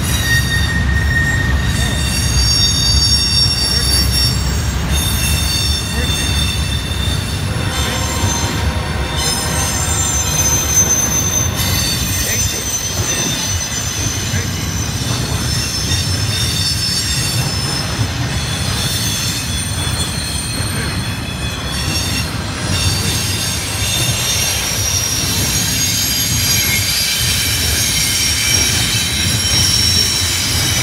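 CSX Q125 double-stack intermodal freight train rolling past, its cars giving a steady loud rumble on the rails. High-pitched squealing from the wheels comes and goes over it throughout.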